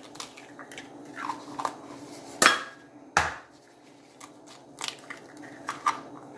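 Eggshells cracking as eggs are broken by hand into a bowl of flour: a few light crackles, then two sharp cracks close together about halfway through.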